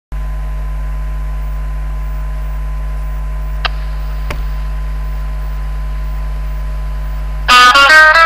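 A steady electrical hum with a faint hiss, broken by two small clicks near the middle. About half a second before the end, a recorded song starts loudly with guitar.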